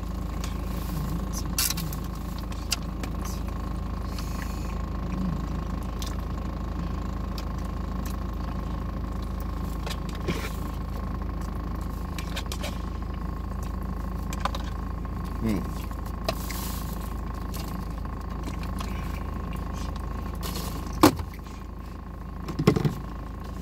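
Steady hum of a car running, heard inside the cabin, with a few small clicks and taps from a plastic food cup and utensil being handled. Near the end a sharp click, and the hum drops lower.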